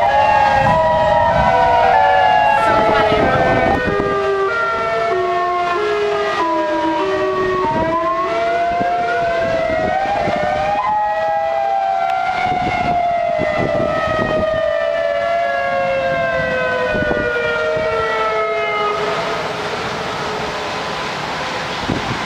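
Outdoor warning sirens wailing: several tones overlap and slide slowly up and down out of step with one another. Near the end the main tone falls in pitch and fades under a rising rush of wind-like noise.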